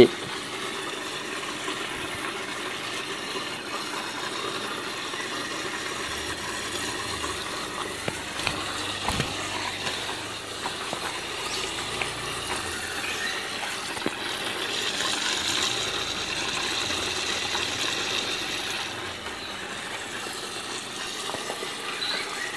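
Steady running water from a hydroponic system, with a few light clicks along the way and a slightly louder, hissier stretch in the second half.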